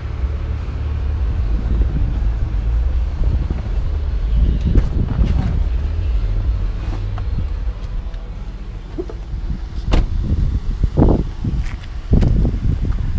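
Low steady rumble inside a 2007 Chevrolet Tahoe's cabin with scattered knocks from moving about in the seats; near the end a door latch clicks and the SUV's door thumps as it is opened to get out.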